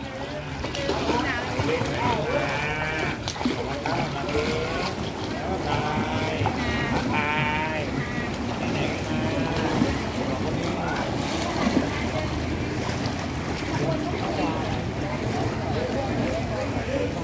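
Water splashing and churning as a child kicks on her back through a swimming pool, with scattered high, wavering voices in the background.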